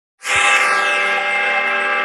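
News-intro music: a held synthesizer chord that starts suddenly with a short low hit and a falling whoosh, then sustains steadily.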